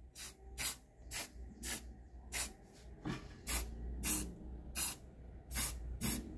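Aerosol spray-paint can sprayed in short bursts, about two a second, each burst a brief hiss as paint is dusted onto a metal piece.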